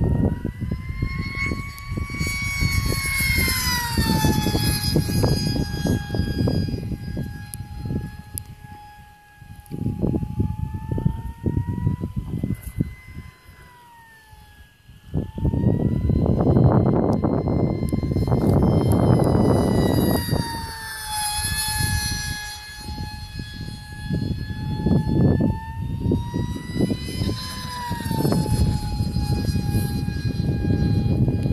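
Whine of a small radio-controlled electric aircraft's motor and propeller running on a 4S battery, its pitch gliding up and down as it flies around overhead. Bursts of low wind rumble on the microphone come and go, with a quieter spell about halfway through.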